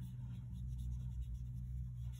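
Watercolour brush stroking across paper, a faint soft scratching, over a low steady hum.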